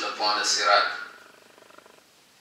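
A man's voice reciting Quranic verses in Arabic in a drawn-out, melodic chant. It trails off about a second in, leaving a quiet pause of room tone.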